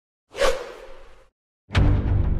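A whoosh sound effect about half a second in that fades away over most of a second. After a short silence, music with a deep low note comes in near the end.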